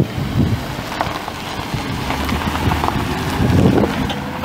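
Ford 4.6-litre V8 engine of a 2007 Crown Victoria Police Interceptor running steadily, with gusts of wind buffeting the microphone.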